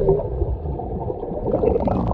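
Underwater rush and bubbling of a child plunging into a swimming pool, heard from a submerged camera, with a faint steady tone underneath.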